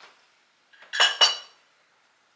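Glass honey jar clinking twice as it is set down on a shelf, two quick sharp chinks with a short ring about a second in.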